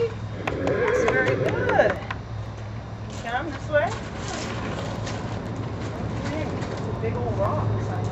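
A person's voice talking, with no clear words, over a steady low hum and a few short clicks.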